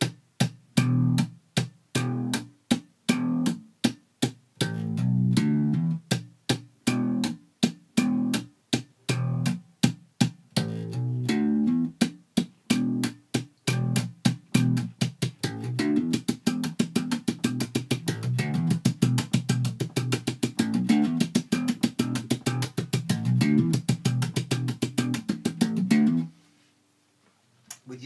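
Electric bass guitar played slap style: a funk line of thumb slaps, popped plucks and percussive left-hand hits, looped over and over. A bit past halfway the strokes come faster and denser, and the playing stops about two seconds before the end.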